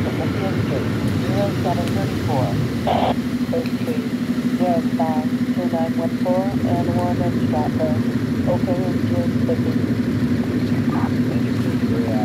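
An engine idling with a steady low hum that sets in about three seconds in, under people talking.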